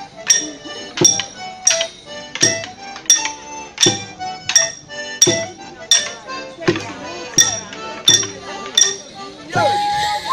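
Morris dancers' iron bars clashed together in time, a ringing metallic clink about every 0.7 s, over folk dance music. Near the end a jangle of bells comes in.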